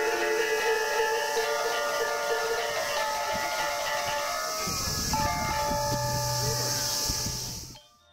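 Balinese gamelan music: bronze metallophones ring in sustained, overlapping tones over a steady hiss. A deep low tone comes in about five seconds in. The sound drops away sharply just before the end.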